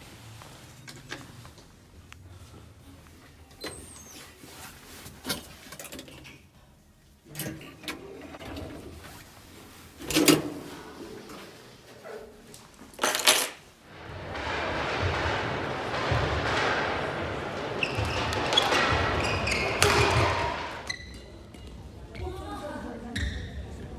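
A series of sharp knocks and clicks from door handles and doors being opened and let shut, the two loudest about ten and thirteen seconds in. Then a loud, steady rushing noise for about seven seconds.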